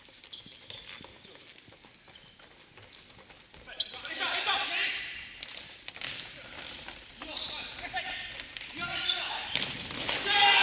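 Futsal ball kicked and bouncing on a wooden gymnasium floor, with short knocks scattered through the quiet first few seconds. From about four seconds in, players shout to each other across the large hall.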